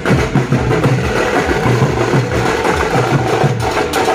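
Several shoulder-slung drums beaten with sticks by marching drummers, a loud, fast, steady rhythm of deep thuds and sharp stick clicks.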